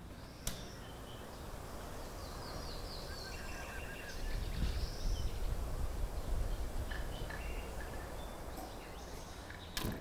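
Quiet outdoor ambience with small birds chirping faintly in short trills, over a low rumble that swells around the middle; a single click about half a second in.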